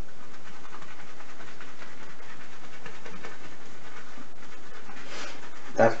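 Shaving brush being swirled on a puck of hard shaving soap to reload it with lather, giving a steady swishing noise. This soap is slow to load.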